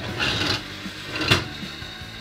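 Toy one-armed-bandit slot machine's lever-driven reels spinning down and clacking to a stop: a short clatter just after the start and a sharp click a little over a second later. It is running without batteries, so there are no electronic casino sounds.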